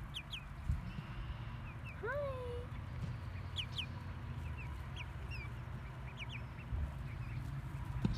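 Young chickens peeping, with short high chirps scattered throughout and one longer call about two seconds in, over a steady low rumble.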